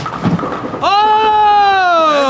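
A man's long, drawn-out shout of 'Oh' starting about a second in, held and slowly falling in pitch. It comes after a brief clatter as the pumpkin strikes the pins.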